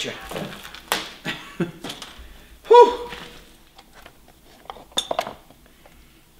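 Clinks and knocks of the hive lifter's metal frame and clamp bars being handled. There is a louder, briefly ringing clang about three seconds in, and a quick run of clicks near the end.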